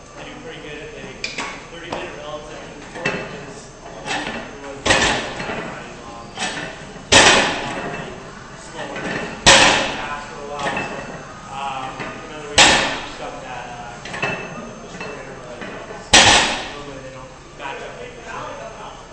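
A barbell loaded to 385 lb with bumper plates set down on the floor five times, one loud thud for each rep of a barbell row, two to four seconds apart, with lighter knocks between as the bar comes up.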